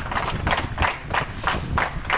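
A group of people clapping together in a steady rhythm, about three claps a second.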